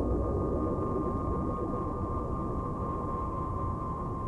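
Low, steady rumble with a thin, high ringing tone held above it, slowly fading: an eerie soundtrack drone under the cave scene.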